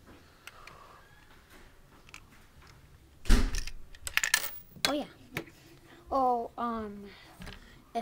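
Plastic Lego bricks clicking and knocking as a hand works a stuck piece of a Lego candy machine loose. There is a loud clatter a little over three seconds in. Near the end, a child makes a couple of short wordless vocal sounds.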